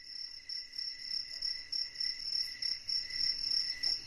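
Crickets chirping in a steady, evenly pulsing chorus, a night-time ambience.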